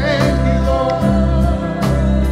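Live church worship band playing with sung vocals: a melody voice over keyboard, guitar, drums and strong sustained bass notes.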